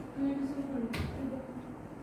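A man's voice speaking briefly, with one sharp click about halfway through.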